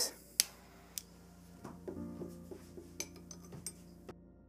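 A metal spoon clinking against a glass flask as it is lowered into the flask of pure oxygen: two sharp taps in the first second, then a run of lighter clinks.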